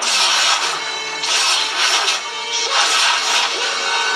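Dramatic TV soundtrack music with loud hissing, rushing sound effects that surge about every second and a half.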